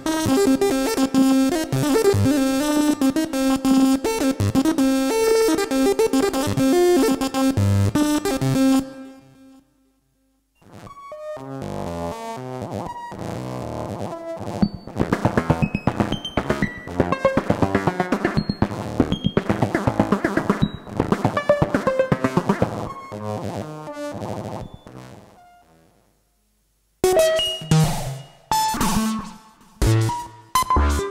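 Arturia MiniBrute 2S analog synthesizer playing its preset sequencer patterns one after another. A busy looping pattern over a steady low note fades out about nine seconds in. After a brief silence a second pattern of quick notes swells and fades away, and a third, choppier pattern starts near the end.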